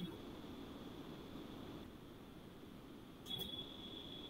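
Faint room tone on an open call microphone: a low hiss and hum with a thin, high-pitched whine that fades out about two seconds in and returns near the end, and a soft click at the very start.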